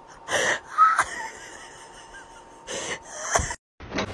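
Four short, breathy wheezing bursts, the second carrying a faint squeak. The sound cuts out abruptly just before the end.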